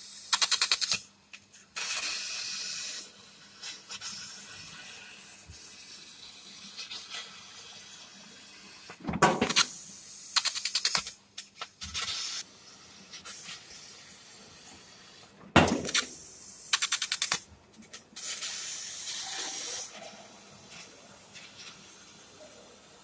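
Laser cutting machine cutting steel plate: the cutting head's gas jet hisses in several loud bursts separated by pauses of quieter hiss. Some bursts carry a rapid crackling pulse.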